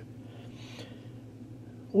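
Quiet pause holding a faint steady low hum, with a soft breath about half a second in.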